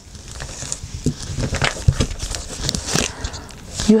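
Tarot cards being handled: drawn off the deck and turned over, card stock rustling and sliding with scattered light clicks and taps.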